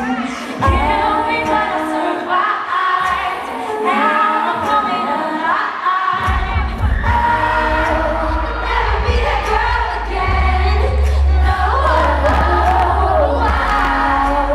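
Female pop vocal group singing live into handheld microphones over an amplified backing track; the bass and beat come in about six seconds in.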